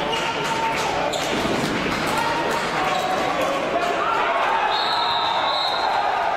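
Floorball game sounds in a large sports hall: a steady crowd din with voices, sharp clacks of sticks and the plastic ball on the court, and sustained pitched tones from the stands. A high steady tone comes in about three-quarters of the way through.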